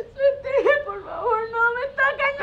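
A teenage girl whimpering in her sleep during a nightmare: a string of short cries that rise and fall in pitch.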